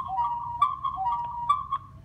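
Electronic whistling tone near 1 kHz from the phone's speaker playing the camera's live audio, an audio feedback loop between the phone and the camera beside it. Short lower blips and a few sharp clicks break it, and it cuts off just before the end.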